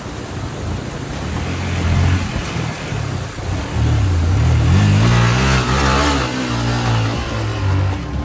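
Yamaha R15's single-cylinder engine revving hard under load as the bike claws over wet rocks. The revs climb about four seconds in and stay high and wavering for several seconds.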